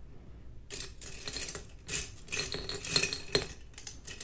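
Paint brush handles clinking against each other and against a glass jar as a hand sorts through the jar and pulls a brush out. The clatter starts under a second in: many light clinks with a few louder knocks.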